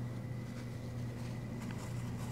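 A steady low hum with a faint high whine, and a couple of faint small clicks from handling.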